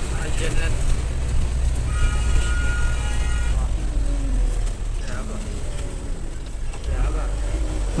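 A vehicle driving on a rough, unpaved road, heard from inside the cabin: a steady low engine and road rumble. About two seconds in, a steady horn sounds for about a second and a half.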